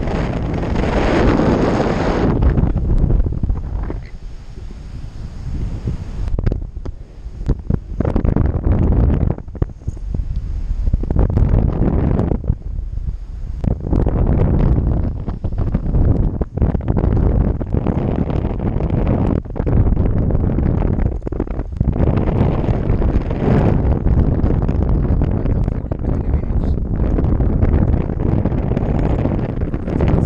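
Wind buffeting an action camera's microphone in paraglider flight: a loud, gusty rumble that rises and falls, easing off for moments several times in the first half.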